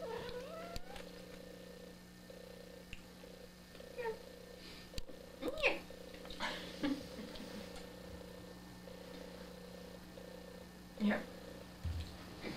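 Domestic cat giving a few short meows over a steady low hum, one rising call at the start and another about halfway through.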